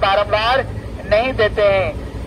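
A man's voice speaking over a low steady hum.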